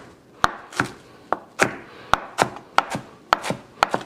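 Chef's knife chopping fresh cilantro on a plastic cutting board: about a dozen sharp knocks, roughly three a second and unevenly spaced, as the herb is given a fine chop.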